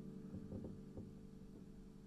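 The song's last chord ringing out and fading away, with a few faint knocks in the first second.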